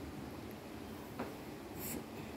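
Faint sounds of a pencil and notebook paper being handled, with a light tick about a second in.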